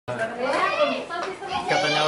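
Speech: lively voices talking.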